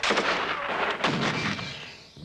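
Automatic gunfire from a machine gun: a rapid run of shots that starts suddenly, surges again about a second in, and fades out near the end.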